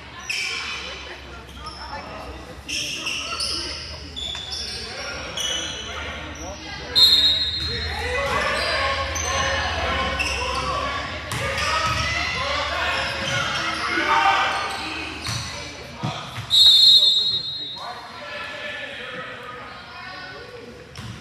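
Indoor basketball game in a gym with an echo: a ball bouncing on the hardwood court, sneakers squeaking in short high chirps, and spectators' voices. Two much louder sharp high-pitched chirps stand out, about 7 seconds in and near the end.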